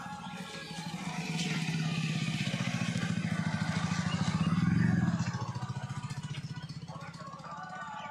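A motorcycle engine passing by, growing louder to a peak about five seconds in and then fading away.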